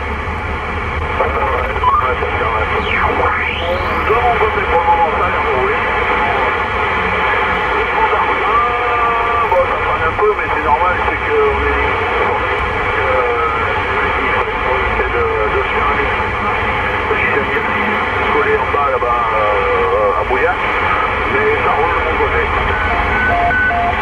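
President Lincoln II+ CB radio receiving on channel 19 in AM: a narrow, telephone-like signal of overlapping, unintelligible voices under several steady whistles, typical of interference between stations. The low rumble of the car runs underneath.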